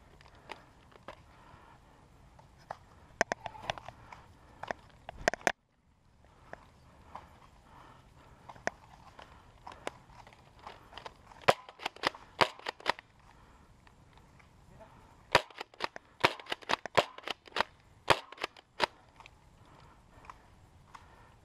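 Nerf blasters firing: sharp snapping shots in rapid clusters, a burst a little after three seconds in, another around eleven to thirteen seconds, and a longer run from about fifteen to nineteen seconds.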